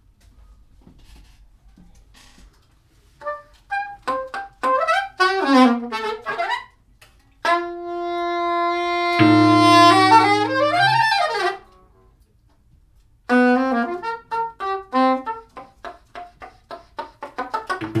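Soprano saxophone playing free, improvised-sounding phrases with bending and gliding notes and one long held note, then a run of quick short notes after a brief pause. A deep steady tone sounds underneath for about two seconds near the middle.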